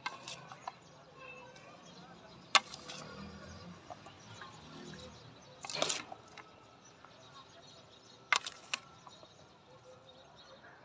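Steel spoons clinking against a steel platter while chopped fruit is stirred and scooped, giving a few sharp clinks spread through, the loudest about two and a half seconds in.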